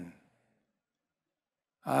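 A man's speaking voice trails off, then near silence for about a second and a half, then a short voiced 'ah' just before the end.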